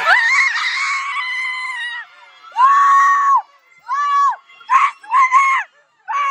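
Excited high-pitched screaming: a long shriek, a second long shriek, then a run of shorter ones. It is celebration as the Blazin' wing challenge is finished with time to spare.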